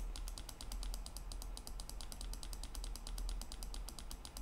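A key pressed over and over, giving a quiet, steady run of clicks several times a second, as the down arrow scrolls a calculator menu.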